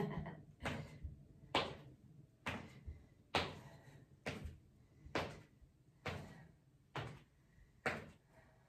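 Footfalls of high-knee marching landing on a rubber gym floor: a steady rhythm of thuds, a little under one a second, each with a short echo.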